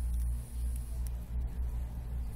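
A low, steady hum with no other clear sound.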